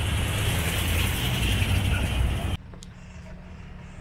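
A bus's engine running close by: a loud, steady rumble with hiss that cuts off suddenly about two and a half seconds in, leaving a quieter low steady hum.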